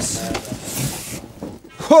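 Bubble wrap and cardboard rustling as hands dig into a packed box, a short hissy crackle about half a second to a second in. A loud exclaimed voice begins right at the end.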